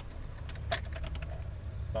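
A few light metallic clicks and a jingle of keys, bunched a little under a second in, as the ignition key goes into the Chevrolet S10's ignition lock.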